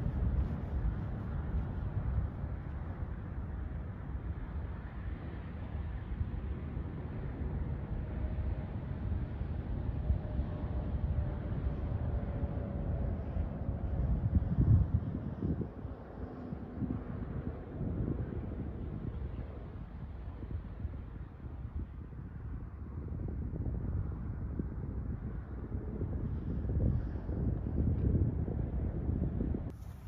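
Wind buffeting the microphone: a gusting low rumble that swells and eases.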